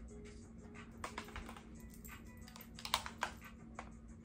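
Eyeshadow palette cases clicking and tapping against one another as they are handled and fanned out, a scatter of light irregular clicks, the sharpest just before the end, over faint background music.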